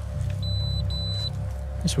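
Handheld roadside breathalyser beeping: two short high-pitched electronic tones in quick succession. The kit is on the blink and will not give a working test.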